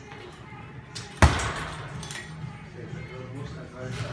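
A kick landing on a hanging heavy punching bag about a second in: one loud, sharp smack with a brief ringing tail.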